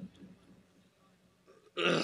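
A man's amplified voice trails off, then about a second of near silence, then a voice starts abruptly near the end.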